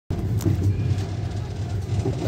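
Steady low rumble of a passenger train, heard from inside a compartment, with a brief click about half a second in.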